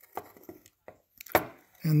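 A few light clicks and taps of hand handling as the turn coordinator's gyro housing is tilted over in its gimbal, with the sharpest tap about a second and a half in.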